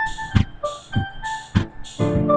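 Funk-style keyboard improvisation: short and held keyboard notes played over a steady, repeating drum beat.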